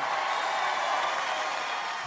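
Audience applauding, a steady even clatter of many hands that eases off slightly.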